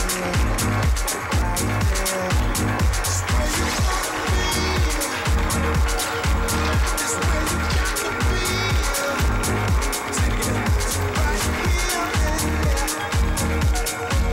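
Electronic dance music with a steady, even beat and a strong bass pulse, playing for a runway walk.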